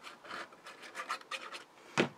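Nozzle of a squeeze bottle of liquid glue rubbing across cardstock as a zigzag line of glue is drawn, quick short scratchy strokes about five a second, with a sharper tap at the end.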